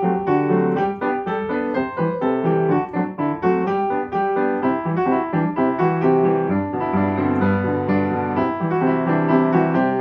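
Upright piano being played: a steady run of struck notes over chords, with deeper sustained bass notes joining about halfway through.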